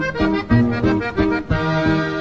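Norteño music, instrumental passage between sung lines: a button accordion plays the melody in short phrases over a steady bass and rhythm accompaniment.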